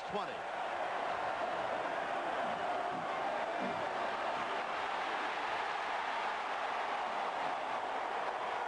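Steady noise of a large stadium crowd, a continuous wash of many voices, heard through a TV broadcast.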